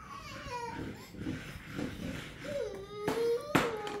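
A toddler fussing with whiny cries: one falling cry near the start and a longer wavering one about three seconds in. Two sharp knocks come near the end.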